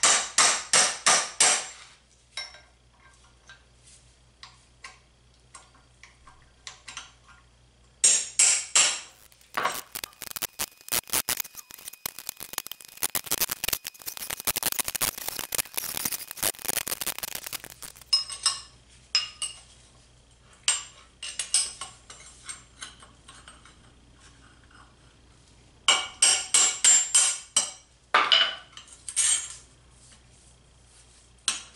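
Brass hammer striking a steel punch to drive a tapered roller bearing off a motorcycle steering stem: bursts of quick metallic strikes, with the longest, densest run in the middle.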